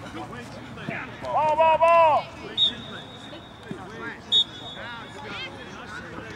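Background voices talking and calling out, with one loud, drawn-out shout about a second and a half in. Two short high-pitched tones come about two and a half and four and a half seconds in.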